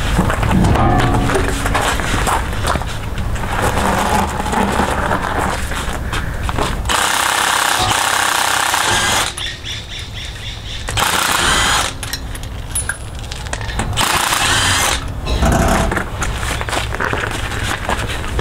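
Background music with short bursts of a cordless impact wrench hammering at a truck's wheel lug nuts, three noisy bursts in the second half.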